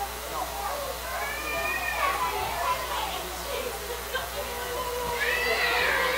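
Several voices praying aloud at once, overlapping and without clear words, with high, wavering cries that rise and fall in pitch about two seconds in and again near the end.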